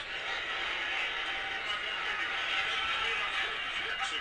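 A phone speaker held near the microphone playing a clip of an NFL television broadcast: a steady, thin, even hiss of broadcast noise with no bass.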